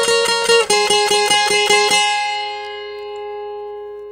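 Twelve-string acoustic guitar (Oscar Schmidt OD312CE) picking the ending of a requinto phrase. A two-note pair on the high strings is struck rapidly over and over, stepping down to a lower pair about half a second in. That lower pair repeats about seven times, and the last stroke is left to ring out and fade.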